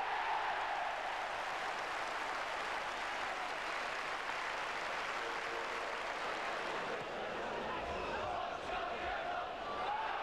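Football stadium crowd cheering and applauding a penalty goal just scored, a steady wash of crowd noise with faint voices in it.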